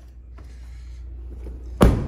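A vehicle door shutting with a single loud thud near the end, after a stretch of quiet rustling over a steady low rumble.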